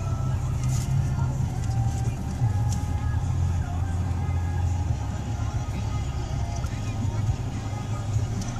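Inside a car cabin while driving: a steady low rumble of engine and road noise, with faint music over it.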